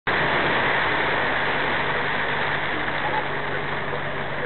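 Inside a truck cab at road speed: the truck's diesel engine drones steadily under an even hiss of tyres on a wet road.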